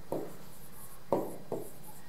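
Stylus writing on the glass screen of an interactive display: three short tapping strokes, the loudest just past a second in.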